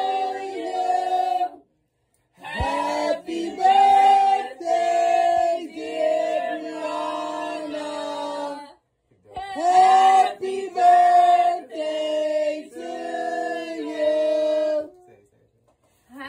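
Vocal music: sung phrases with long held notes, broken by three short silences.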